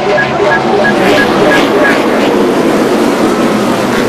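A full field of NASCAR Cup stock cars with pushrod V8 engines accelerating together on a restart: many overlapping engine notes at full throttle, rising in pitch as the pack comes by. A short run of high beeps sounds over it during the first two seconds.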